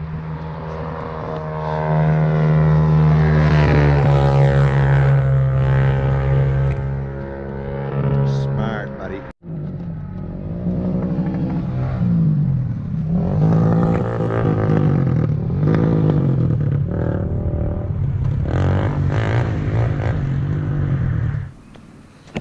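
Four-wheeler (ATV) engine running at high revs, its note holding steady and then dropping a little. After an abrupt cut about nine seconds in, the engine's pitch rises and falls over and over as it revs up and down.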